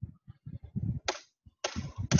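Low, broken speech from a man's voice through a webinar microphone, with a short hiss about a second in and a louder breathy burst near the end as talking resumes.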